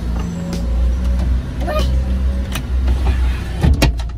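Van's engine idling, a low steady hum heard inside the cabin, while the electric side window closes; a pair of sharp clicks near the end are the loudest sounds.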